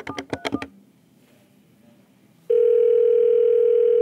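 Avaya 1416 desk phone keypad beeping as the last digits of an outside number are pressed, then after a short pause a steady ringing tone of about two seconds from the phone's speaker: the dialled outside line ringing back.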